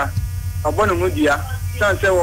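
Steady low electrical mains hum running under continuous talking.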